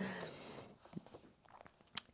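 A quiet pause in close-miked speech: a fading breath, a few faint mouth clicks, and a short sharp lip smack just before talking resumes.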